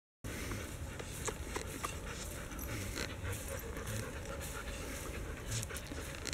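A Belgian Malinois panting steadily with its mouth open while being petted, with scattered small clicks and rustles through it.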